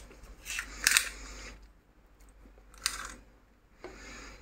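Small retractable tape measure in a plastic case being handled and its tape pulled out. There are a few short clicks and rustles, the loudest about a second in and another near three seconds.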